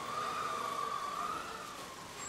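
A siren wailing with one slow, gentle rise and fall in pitch, easing off toward the end.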